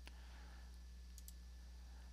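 Faint computer keyboard keystrokes, a password being typed: one click at the start and a couple of fainter ones a little past a second in, over a low steady hum.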